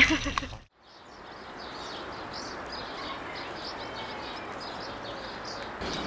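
Outdoor background sound with faint, irregular, high-pitched chirping, which starts after a brief drop to silence about a second in.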